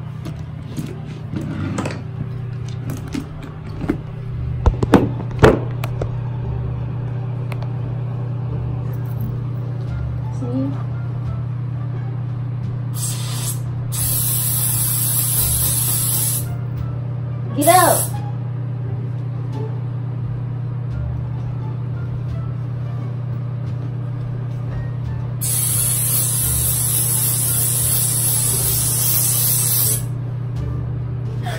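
Aerosol can of Silly String spraying in hissing bursts: two short ones a little past halfway, a brief one near 18 seconds, and a long spray over the last four or five seconds.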